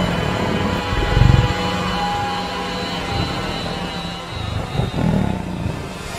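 Documentary soundtrack of sustained held tones, with two deep rumbles, one about a second in and another near five seconds.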